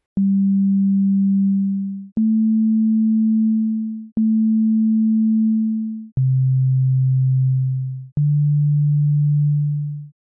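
Csound synthesizer instrument playing five plain sine-like tones in turn, each about two seconds long and starting with a click. The pitch steps up slightly for the second and third notes, then drops lower for the last two.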